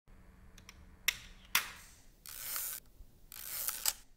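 Hasselblad medium-format film camera being worked by hand: two sharp mechanical clicks as the shutter is released, then the winding knob turned in two half-second ratcheting strokes, the second ending in a couple of clicks as it stops.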